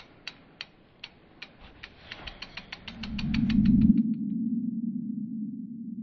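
Sound effects for an animated logo: a run of sharp ratchet-like clicks that speed up, then a low swell that is loudest about four seconds in and slowly fades.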